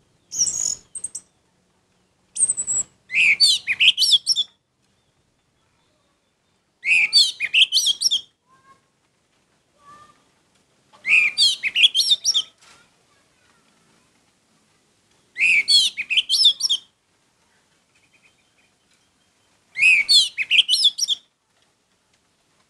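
Orange-headed thrush singing in a series of about six short phrases, each a fast run of high, varied notes lasting a second or two, with pauses of a few seconds between them.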